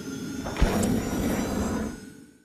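Short electronic outro jingle for the eHow logo animation: sustained synth tones with a sharp hit about half a second in, dying away at the end.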